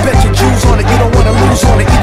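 Hip hop music with a steady, heavy drum beat and a bass line.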